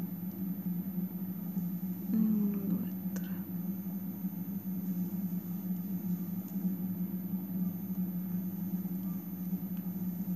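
A steady low background hum, with a short murmured voice sound about two seconds in and a faint click just after it.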